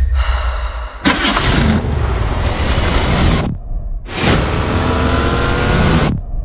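Car engine of the Ecto-1, a 1959 Cadillac Miller-Meteor, starting up: after a quieter first second it catches with a loud burst of engine noise about a second in. The sound breaks off briefly and then comes back as the engine accelerates hard, its pitch slowly rising.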